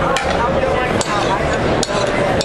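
Crowd chatter in a large hall, with three short sharp knocks or clicks cutting through it, about a second apart.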